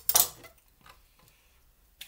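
A large cook's knife set down on a chopping board: a sharp clack and short clatter just after the start, then only faint handling sounds.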